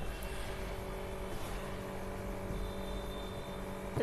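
Steady low background hum with a few faint, unchanging tones: room and recording noise.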